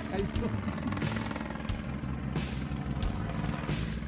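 Helicopter flying overhead, a steady rotor chop with a low engine hum.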